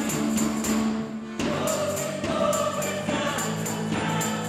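Live band music with several voices singing together over held instrumental notes, and a high percussion beat ticking steadily through it.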